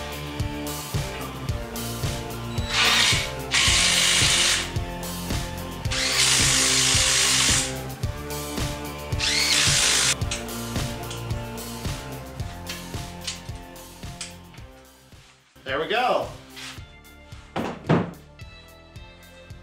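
Cordless drill-driver running exhaust header bolts into an engine in four short bursts, the longest about six seconds in and the last rising in pitch as it spins up. Background music with a beat plays underneath.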